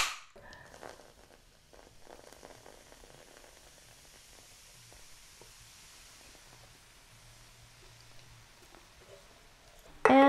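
Faint pouring and fizzing of Coca-Cola from a mini can into a bowl of flour, a soft hiss that swells for a few seconds with a few small clicks.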